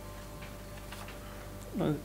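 Faint ticks and rustle of paper sheets being handled at a lectern microphone, over a steady low electrical hum. Near the end a man's voice gives a short falling 'uh'.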